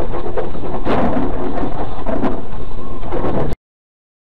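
Loud in-car dashcam audio of a car driving: road and cabin noise with frequent short knocks and rattles, cutting off abruptly about three and a half seconds in.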